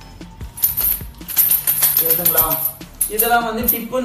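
Small metal parts rattling and clinking inside a zip-lock plastic bag as it is shaken, with the plastic crinkling, as a dense run of clicks from about half a second in to about three seconds.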